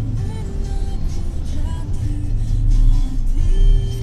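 Steady low rumble of a car's engine and tyres heard from inside the cabin while driving, with faint music playing over it.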